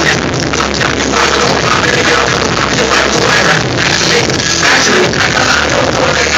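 Live hip-hop concert music played loud over a club sound system, with strong bass, recorded from within the crowd.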